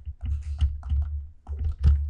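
Stylus tapping and scratching on a pen tablet as words are handwritten: a quick, irregular run of small clicks over a low rumble.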